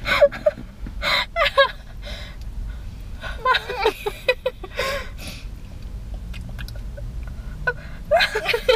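Two women laughing in several bursts over the first five seconds, then quieter, with faint clicks of chewing on a hard candy.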